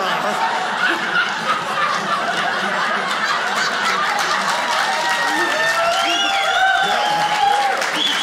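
Studio audience laughing steadily, with some clapping; a few voices ring out above the laughter near the end.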